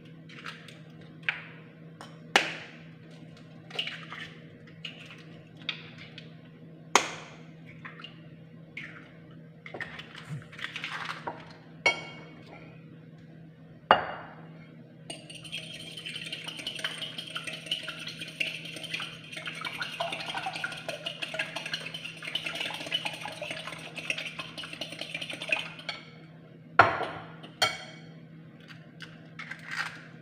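Eggs tapped and cracked on the rim of a glass bowl, a string of sharp knocks and clinks. About halfway through a fork starts beating the eggs in the glass bowl, a fast continuous clinking that lasts about ten seconds, and a few more sharp knocks come near the end.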